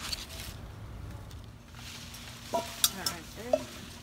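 Soft rustling and handling noise among grapevine leaves during picking, with a couple of light clicks in the second half.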